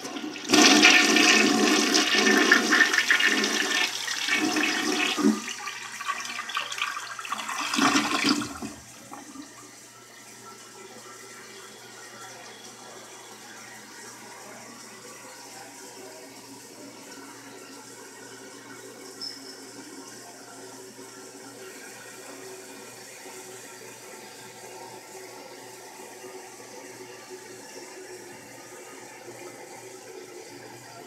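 American Standard Plebe toilet flushing: a loud rush of water for about eight seconds, ending with a final surge as the bowl empties. It is followed by a steady, much fainter hiss of water as the toilet refills.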